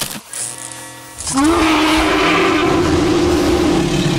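Film soundtrack of music and sound effects. About a second in, a loud sustained effect rises in and holds over the music.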